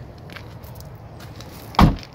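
A 2009 Nissan Note's rear side door shut with one heavy thud near the end, after quiet handling and shuffling noise.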